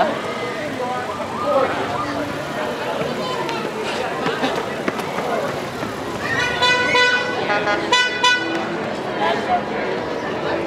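A vehicle horn honking twice past the middle, the two honks about a second and a half apart, over steady crowd chatter.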